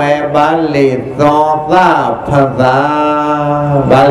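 A Buddhist monk's voice chanting in a level, drawn-out tone, holding each syllable on a long, steady note, the longest near the end.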